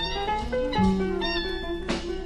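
Late-1960s psychedelic blues-rock band recording playing an instrumental passage between sung lines. Held lead notes, one sliding up at the start, sound over a steady bass.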